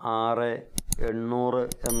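A man talking, with two quick clicks of a subscribe-button animation sound effect a little before halfway, then another click and a bright, high ringing chime starting near the end.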